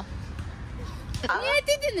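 Low outdoor background noise, then a voice speaking from a little over a second in.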